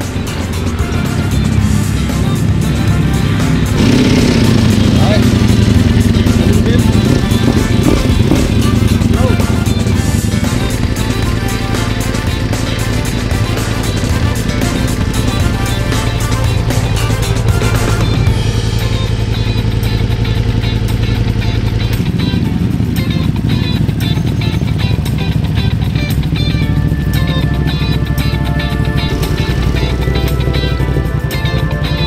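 Background music with a steady beat laid over a motorcycle engine being started and left running.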